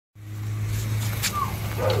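Pickup truck engine idling with a steady low hum. Near the end a dog starts a long, drawn-out whine.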